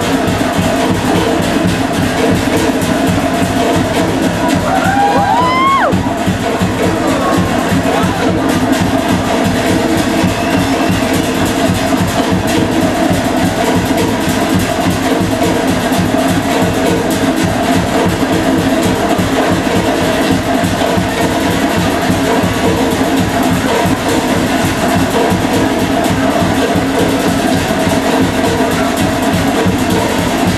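Loud, fast, steady drumming music for a Polynesian fire-knife dance. A single short rising whoop cuts through about five seconds in.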